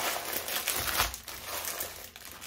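Clear plastic bags of hair bundles crinkling as they are handled and lifted out of a cardboard box, an irregular run of crackles.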